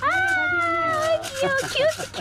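A toddler's high-pitched whining: one long drawn-out call, then shorter calls near the end.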